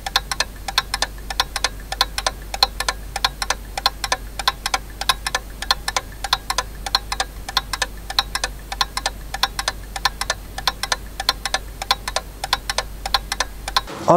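Clock ticking, quick and even at about four ticks a second, over a low steady hum; it cuts off suddenly at the end.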